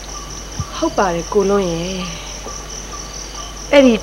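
Crickets chirping steadily in a fast, even pulse, as night ambience on a film soundtrack. A person's voice sounds briefly about a second in.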